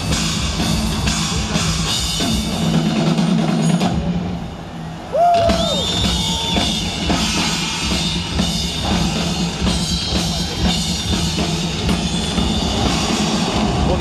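Live rock drum solo on a full drum kit, with rapid strikes on drums and cymbals heard from far back in a large venue. The playing drops back briefly about four seconds in, then returns with a sudden loud hit about a second later.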